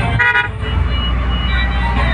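A short vehicle horn toot about a quarter second in, over the steady low rumble of road traffic.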